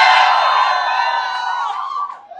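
A room full of people cheering and whooping together, many raised voices held at once, fading out near the end.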